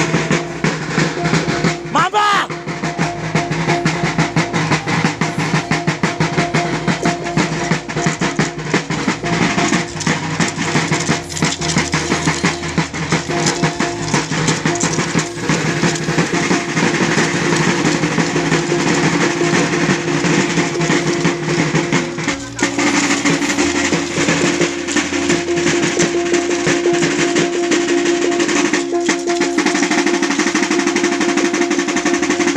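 Several hand-held, rope-laced double-headed drums beaten in a fast, continuous roll, with a steady ringing tone held over them: the drum music that drives a Sagayan dance.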